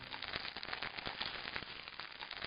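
Faint crackling sound effect: a dense, irregular patter of small clicks and snaps.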